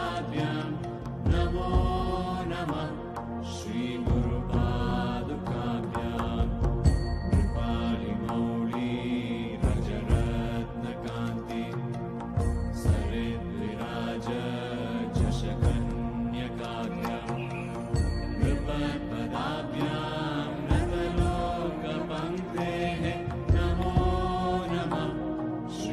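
Hindu devotional mantra chanted over music, with drum hits under the sung lines.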